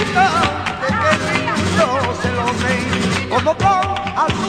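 Flamenco cante: a male voice singing long, wavering, ornamented lines over flamenco guitar, with sharp percussive hits throughout.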